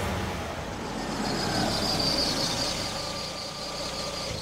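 Hyundai i10 hatchback rolling up the driveway and slowing to a stop, with a high squeal in the middle as it slows.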